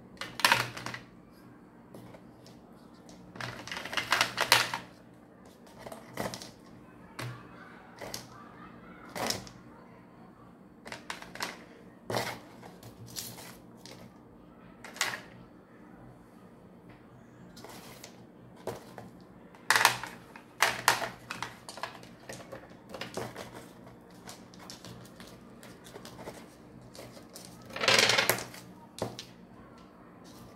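Small polished stones clicking and knocking as they are set down one by one on a cardboard-covered tabletop. The clicks come at an irregular pace, with a few longer clattering rattles about four seconds in, around twenty seconds and near the end.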